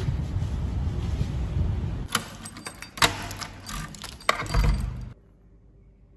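A low rumble on the microphone for about two seconds, then about three seconds of keys jangling with a few sharp clicks, cut off suddenly.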